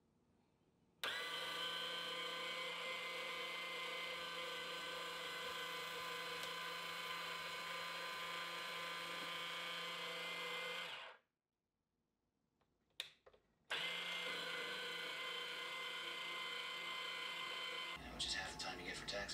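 Electric apple peeler's small motor running with a steady whine as it turns an apple against the peeling blade. It starts about a second in, stops for about two and a half seconds with a single click in the gap, then runs again.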